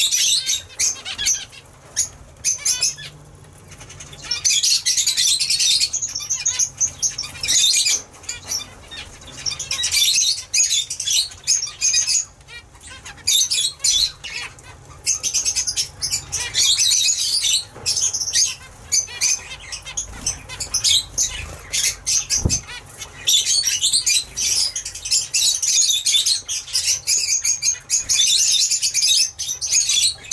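Zebra finches calling in dense, high, raspy chatter and fluttering their wings, in bursts with short lulls.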